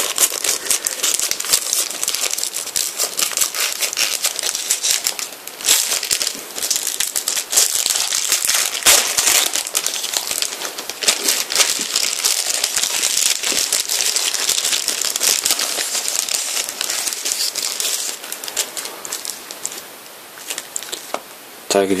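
Clear plastic bag wrapping a magazine crinkling and crackling as it is handled and opened to get at the trading cards inside: a dense run of small crisp clicks that grows quieter near the end.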